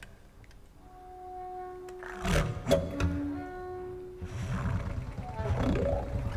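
Quiet experimental ensemble music: soft sustained wind-like tones enter about a second in, broken by two short breathy bursts, then a low rumbling, roaring noise swells from about four seconds in, with rising glides near the end.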